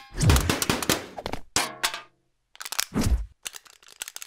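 Fighting-game style hit sound effects: a rapid string of punch and kick impacts, several of them heavy and deep. There is a brief silence about two seconds in, then more hits.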